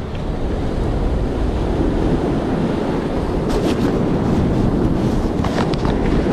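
Ocean surf breaking and washing against a rock ledge: a steady rushing wash, with wind buffeting the microphone.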